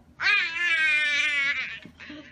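Young boy letting out a high-pitched, quavering laugh: one long wavering note of about a second and a half that sinks slightly in pitch.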